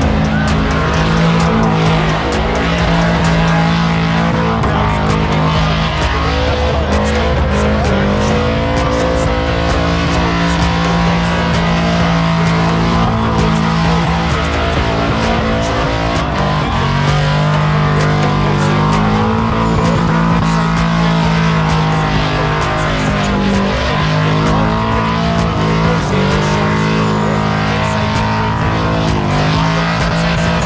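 Car engine revving hard during a burnout, held at high revs with several short dips and climbs in pitch as the rear tyres spin, with music playing over it.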